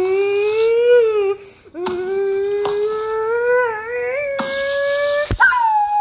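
A person's long, drawn-out wailing cries. The first lasts about a second and a half, the second slowly rises in pitch over about three seconds. A sharp click comes near the end, followed by a shorter wail.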